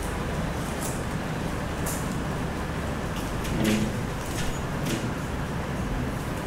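Steady low hum and hiss of a lecture hall's sound system, with scattered light clicks of laptop keys being typed and a short low murmur a little after halfway.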